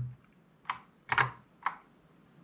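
Three short key clacks on a Kinesis Advantage 360 split ergonomic mechanical keyboard with Cherry MX Brown switches, spread over about a second, the middle one a quick double.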